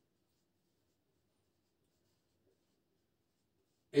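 Very faint sound of a marker writing on a whiteboard, barely above silence.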